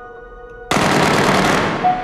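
A sudden, loud burst of automatic gunfire, about a second long, dying away. It cuts in over soft, sustained music tones.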